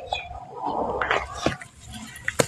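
Hands squeezing and lifting thick wet red sand slurry in a plastic tub: wet squelching and sloshing of the mud, with two short sharp wet pops about a second in and halfway through.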